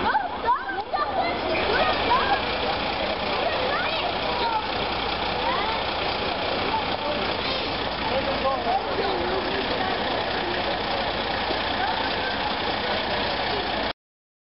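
Fire engine idling steadily, with several people talking in the background.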